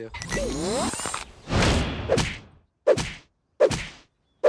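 Film-trailer sound effects: a warbling electronic tone gliding up and down, then a whoosh, then sharp hits about three-quarters of a second apart, two of them near the end.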